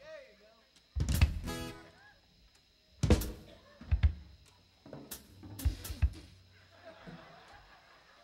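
Live band drum kit playing a handful of separate, irregularly spaced accents on bass drum and snare, with long gaps between them. The first and loudest hit carries a short pitched ring.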